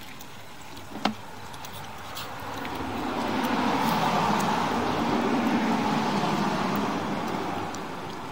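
A car passing by, its road noise swelling over a couple of seconds, holding, then fading away near the end, with a single sharp click about a second in.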